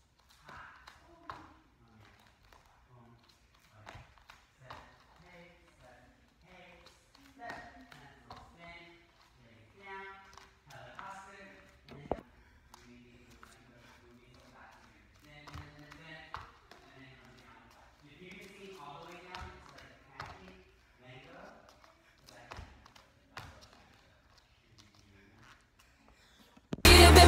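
Faint, indistinct talking in a quiet room, with scattered light taps and thumps, one sharper thump about twelve seconds in, from bare feet on a wooden floor.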